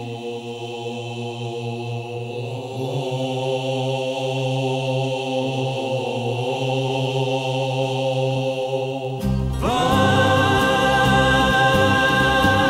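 Vocal group singing long held chords in Corsican polyphonic style over a steady low drone, without clear words. About nine seconds in the sound grows louder and fuller as a new chord with a higher held line comes in.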